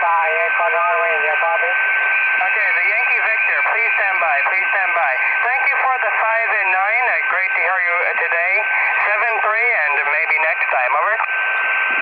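A distant station's voice received on a Yaesu FT-817ND portable HF transceiver over 20-meter single-sideband. The speech is narrow-band and noisy, with hiss and a steady whistling tone under it.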